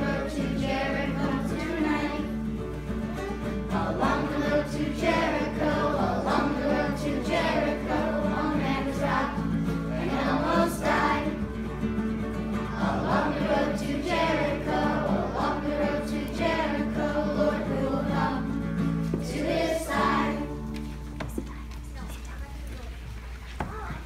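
Children's choir singing a song together to acoustic guitar accompaniment; the singing tails off near the end.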